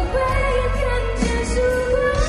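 A woman singing a Mandarin pop song live into a handheld microphone over band backing, holding one long, slightly wavering note.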